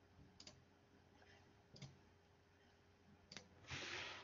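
Near silence with three faint, scattered clicks from a computer, followed near the end by a short, louder burst of noise.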